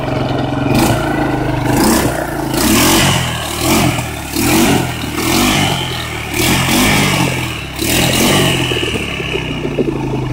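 ATV engine revved hard in repeated bursts, about once a second, its wheels spinning and churning in deep mud: the quad is stuck and not getting traction.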